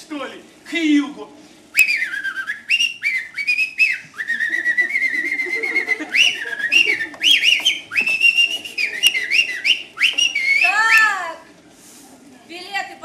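Someone whistling a tune: a run of held high notes that step up and down, some with a fast pulsing flutter, ending with a couple of quick up-and-down swoops.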